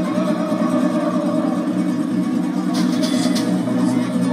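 Tamburica band playing an instrumental passage live: plucked tamburicas carry the melody over a steady double bass.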